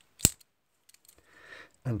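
A single sharp click about a quarter of a second in, followed near the end by faint rustling of handling.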